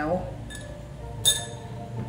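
A spoon clinks against a drinking glass of water while stirring: a faint tap, then one clear ringing clink a little past one second in.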